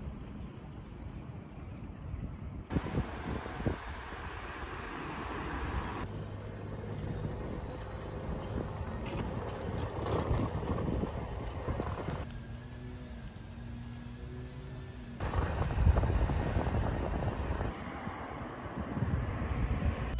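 Outdoor ambient sound with wind on the microphone, changing abruptly every few seconds from one stretch of steady background noise to another.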